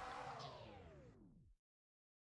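An edited-in transition effect: a pitched whoosh that glides steadily down in pitch and fades out over about a second and a half, ending in dead silence.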